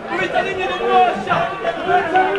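Several people talking at once in overlapping, indistinct chatter, with no single clear voice.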